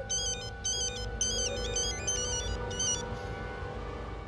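Mobile phone ringing with a beeping electronic ringtone that plays a short repeating melody and stops about three seconds in. Sustained background film music runs underneath.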